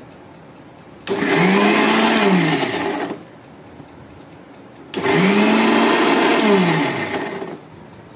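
Kitchen mixer grinder run in two short pulses, each motor whine rising as it spins up and falling as it winds down over about two seconds, grinding fresh coriander, green chillies and ginger with water into chutney.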